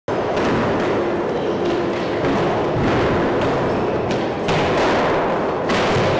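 Skateboards rolling on skate-park ramps: a steady rumble broken by repeated thuds and knocks.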